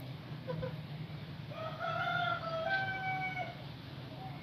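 Rooster crowing once: a single drawn-out call starting about one and a half seconds in and lasting nearly two seconds.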